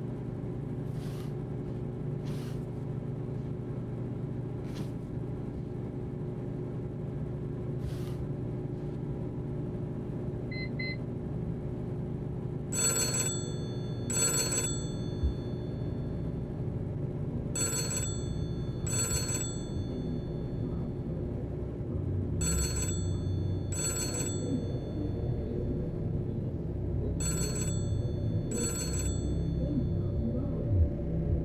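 An old rotary desk telephone's bell ringing in a double-ring cadence: four pairs of short rings, a few seconds apart, starting about halfway through. Under the rings runs a steady low hum, with a few faint clicks before the ringing starts.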